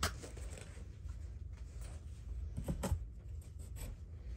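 Light rustling and a few soft clicks and knocks from handling packaged cosmetics and a bag, over a low steady rumble.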